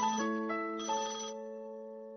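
A mobile phone's ringtone playing a short melody of clear, bell-like notes. In this stretch the last notes of the phrase ring on and fade away, before the tune repeats for the incoming call.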